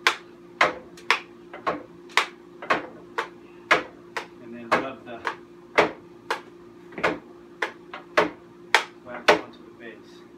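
A hard block of ski wax knocking and clicking against a ski base and a clothes iron, about two sharp clicks a second, as wax is worked onto the bases. A steady low hum runs underneath.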